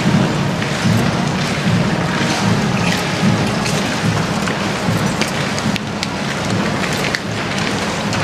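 Steady crunching of many marching boots and horses' hooves on gravel, with scattered sharper strikes throughout.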